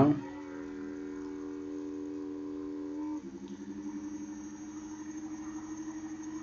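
A steady mechanical hum made of several tones. About three seconds in, it steps down in pitch and takes on a slight pulsing.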